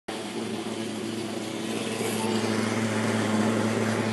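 Steady engine drone of a mosquito fogging machine spraying insecticide against dengue mosquitoes, growing gradually louder.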